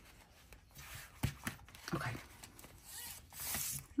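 Quiet handling of paper stickers and a clear plastic pouch in a notebook: a couple of light clicks a little past a second in, then a short brushing plastic rustle near the end.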